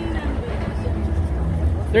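Busy street ambience: a steady low rumble with faint voices of passers-by talking.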